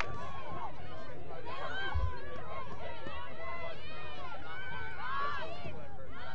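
Several voices shouting short calls at once across the field during live play, no clear words, over a steady low outdoor rumble.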